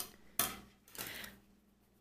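Thin wire coat hanger being handled and bent: a sharp click at the start and another about half a second in, then a faint scrape.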